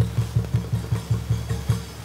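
A Buddhist wooden fish (mõ) struck in a fast, even roll of about five or six hollow knocks a second, as in temple chanting.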